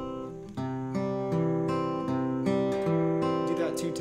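Steel-string acoustic guitar fingerpicked over a held C chord, in a slow, even thumb-index-thumb-middle pattern: the thumb takes the A and D strings, the index finger the G string and the middle finger the B string. Single notes follow one another about every half second and ring over each other.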